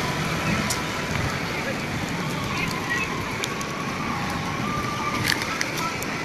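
Steady outdoor background noise, a hiss with faint distant voices, broken by a few sharp clicks about a second in and again near the end.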